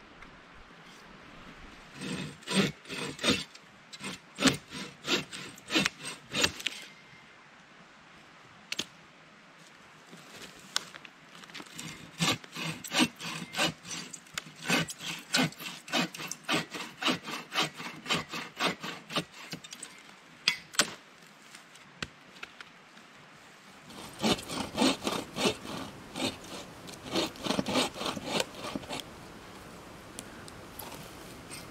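Bow saw cutting through a dead tree trunk in three spells of quick back-and-forth strokes, about two strokes a second, with short pauses between spells.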